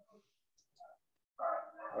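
A short pause in video-call conversation, then a man's drawn-out "Oh" starting near the end.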